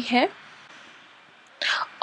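A woman's voice finishes a word, then a pause with faint hiss, and a short breathy sound near the end, like an intake of breath before she speaks again.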